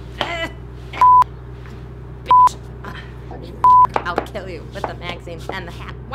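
Censor bleeps laid over swearing speech: three short, loud beeps of one steady pitch, each about a quarter second long and a little over a second apart, cutting in and out sharply.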